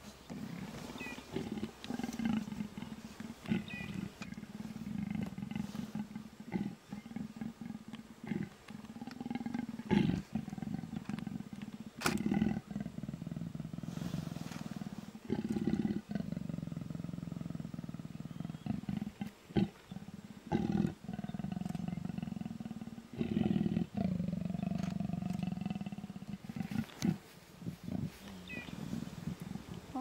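A pair of leopards growling while mating: a long run of low growls, broken by short pauses every few seconds.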